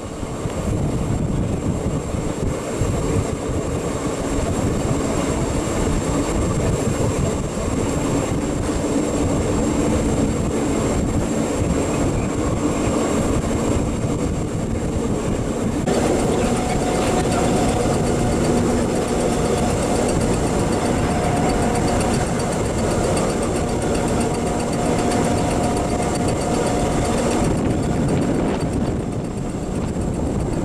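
Electric railcar Are 4/4 25 running at speed on open track: steady rolling noise of wheels on rails mixed with air rushing past the open window. A steady whine joins in partway through.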